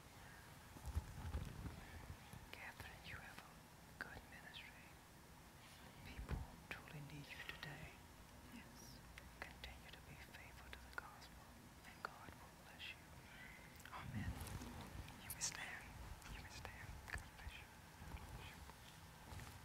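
Near silence with faint whispering and small rustles and clicks, with a couple of soft low thumps.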